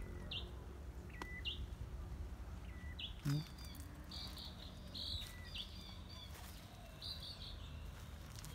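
Small birds chirping: short high calls every second or so, over a faint steady low background. A brief low sound comes about three seconds in.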